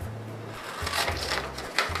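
Scissors cutting through thick scrapbook paper: a few rasping cuts, clearest about a second in and again near the end.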